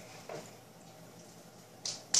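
Quiet room tone, then one short, sharp hand clap near the end.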